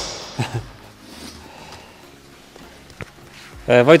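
Mostly quiet room with faint handling noise, broken by one sharp click about three seconds in.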